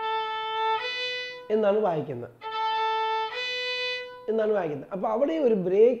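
Violin bowed in the Carnatic style, playing two long steady notes, the second a step higher, and then the same two-note pair again about two seconds later. A man's voice comes between the two pairs and takes over for the last couple of seconds.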